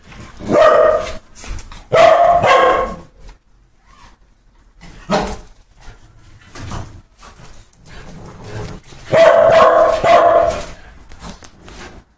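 A dog barking in bouts: one about half a second in, two close together about two seconds in, a short one about five seconds in, and a longer run of barking about nine seconds in.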